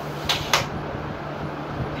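Telescoping metal trolley handle of a portable speaker being worked, giving two sharp clacks about a quarter second apart.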